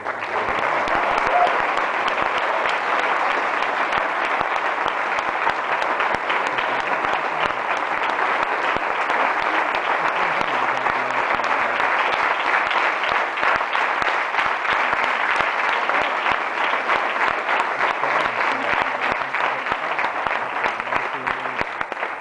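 Audience and people on stage applauding: a long, dense round of hand clapping that starts suddenly and dies down near the end.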